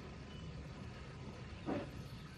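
Felt-tip marker writing faintly on a whiteboard over a low steady room hum, with a short faint sound near the end.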